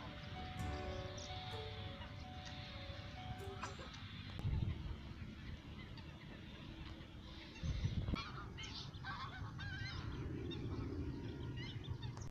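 Waterbirds calling faintly, goose-like honks among them, with thin chirping calls coming mostly in the second half. Under them is a steady low rumble, with two dull bumps a few seconds apart.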